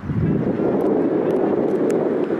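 Wind buffeting the camera microphone: a steady, loud rumbling rush, with a few faint clicks over it.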